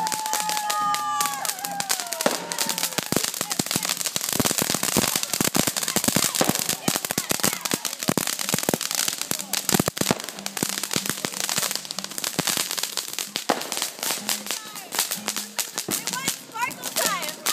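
Ground fountain firework crackling, a dense run of rapid sharp pops that starts about two and a half seconds in and carries on. Before it, a long high tone holds and then bends downward.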